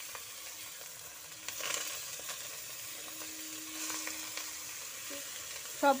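Banana-leaf-wrapped hilsa parcels sizzling steadily in mustard oil in a wok, with a few light knocks and scrapes as the parcels are turned over.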